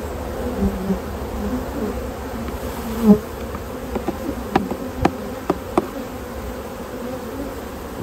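Honeybees from an open hive buzzing all around, individual bees droning past close by. A few sharp clicks or taps sound about four to six seconds in.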